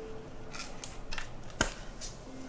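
Clear plastic card sleeve and rigid top loader being handled: a few short crinkly plastic rustles, then a sharp click about a second and a half in.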